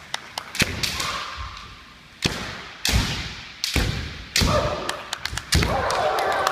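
Kendo sparring on a wooden gym floor: bamboo shinai clacking and cracking together, and bare feet stamping hard on the boards. There are about seven loud strikes spread across the few seconds, each ringing on in the hall, with lighter taps between them and shouts after some strikes.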